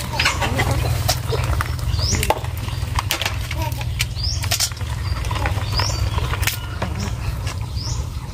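Live rice-field crabs clattering and scrabbling against each other and a plastic basin as they are picked out by hand: an irregular run of sharp clicks and rattles. A short rising chirp repeats about every second and a half behind it.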